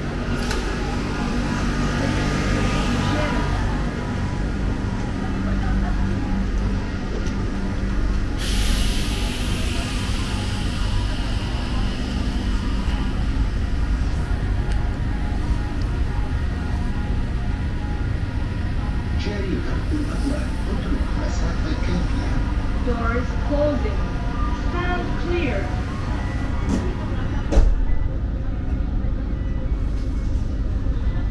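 Doha Metro train heard on the platform and then inside the carriage: a steady low rumble, with a sharp hiss of air about eight seconds in that thins out over the next few seconds. A single loud knock comes near the end.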